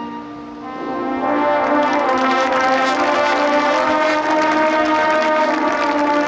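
Marching band brass playing: a soft held chord gives way about a second in to the brass section swelling into loud, sustained chords.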